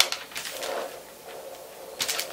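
Plastic packaging and hard plastic breast-pump parts being handled: a sharp click at the start, then light rustling and knocking.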